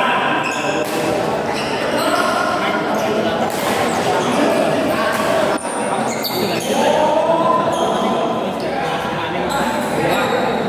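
Badminton rally: rackets strike the shuttlecock at irregular intervals, with shoes hitting the court, all echoing in a large hall.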